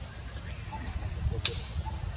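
Forest ambience with a steady high-pitched insect drone, a few faint short chirps, and one sharp crack about one and a half seconds in.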